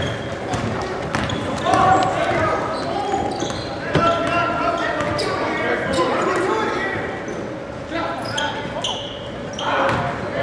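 Basketball being dribbled and bouncing on a gym floor during a game, with short knocks scattered through, under overlapping voices of players and spectators echoing in a large gymnasium.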